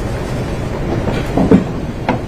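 Steady low rumbling background noise, with a brief, louder muffled sound about one and a half seconds in.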